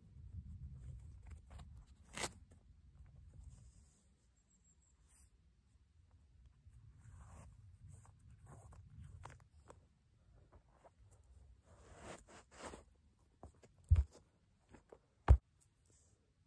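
Faint rustling and small clicks as a hiking shoe's laces are loosened and pulled and the shoe is worked off, with two sharp thumps near the end.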